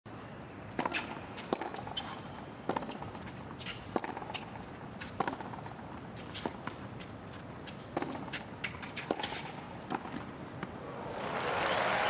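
Tennis ball struck back and forth by rackets in a hard-court rally, a sharp pop roughly once a second. Near the end crowd applause and cheering swell up as the point is won.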